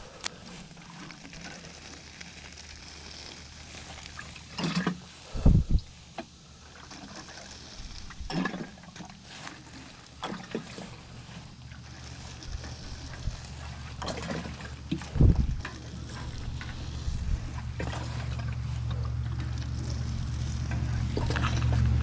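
Watering can with a rose head sprinkling liquid onto grass and plants, with a couple of dull thumps. Over the last several seconds a low engine hum grows steadily louder.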